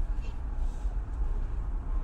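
A steady low rumble of background noise with no speech, the same rumble that runs under the talk on either side.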